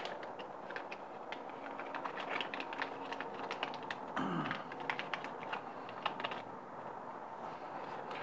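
Faint crinkling of a small pink anti-static plastic bag, with irregular light clicks and taps as four stepper driver boards are pulled out of it and handled.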